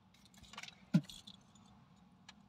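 Handling noise of a plastic drink bottle being picked up and gripped inside a car: light rustles and clinks, with one sharp knock about a second in.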